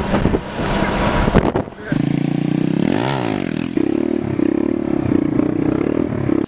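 Motorcycle engine running, revved up and back down once about three seconds in. Before it, for about two seconds, voices and vehicle noise.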